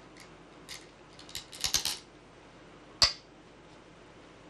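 Go stones clicking as they are handled, with a quick cluster of clacks about a second and a half in. About three seconds in comes one sharp, louder click as a stone is set down on the commentary board.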